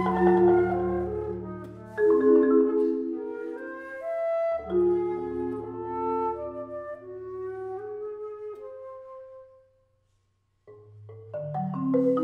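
Flute and four-mallet Malletech marimba playing a duet, the marimba striking chords under long flute notes. The phrase dies away into about a second of silence near the end, then both instruments come back in.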